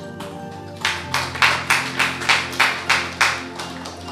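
Short round of clapping from a small audience, about three claps a second, starting about a second in and dying away near the end, over soft instrumental background music.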